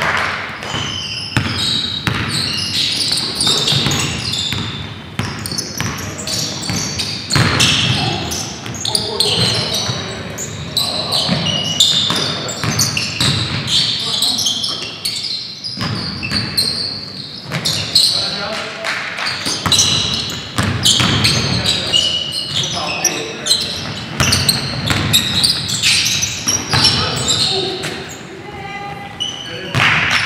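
Game sound in a gymnasium: a basketball bouncing on the hardwood floor again and again amid players' indistinct voices and calls, all echoing in the large hall.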